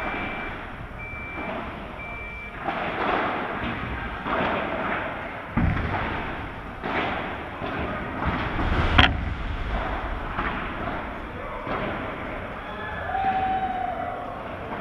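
Padel ball struck by rackets and bouncing off the court's glass walls in a large, echoing indoor hall, with two sharp hits loudest about six and nine seconds in. Three short high beeps sound near the start.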